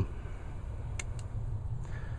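Steady low hum with two brief faint clicks about a second in, the second softer than the first.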